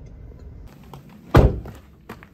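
A single loud, heavy thunk a little past halfway, with a short ring-out, followed by a few faint clicks.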